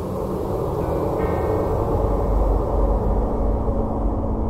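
Dark, eerie ambient horror soundscape: a dense low rumble that swells in loudness, deepest in the second half, with a faint ringing tone about a second in.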